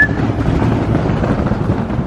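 Wind buffeting the camera microphone, a steady rumbling noise. A rising whistle tails off right at the start.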